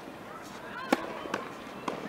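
Tennis ball struck by a racket on an outdoor clay court: a sharp pock about a second in, the loudest sound, followed by two lighter knocks of ball on racket or court, with distant voices behind.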